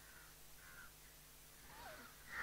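Near silence, with faint cawing of crows once or twice.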